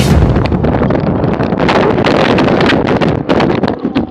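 Wind rushing over a bike-mounted action camera's microphone at race speed. Through the second half come a growing run of sharp clattering knocks, the sound of a crash as bikes and riders go down on the road.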